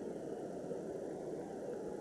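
Steady, muffled low rumble of stadium ambience from old 1988 TV broadcast footage of the Olympic 100 m final, with no commentary, heard through a video call's screen share.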